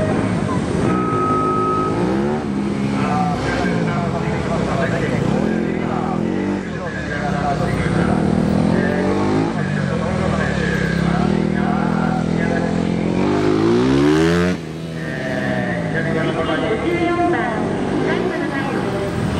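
Honda Grom's 125 cc single-cylinder engine revving up and down in repeated short bursts as it is ridden hard through tight turns, with other motorcycle engines running alongside. About fourteen and a half seconds in, a long climb in revs cuts off suddenly.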